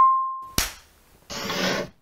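Title-card sound effects. A ringing tone dies away over the first half second, a sharp snap follows about half a second in, then a short swoosh near the end.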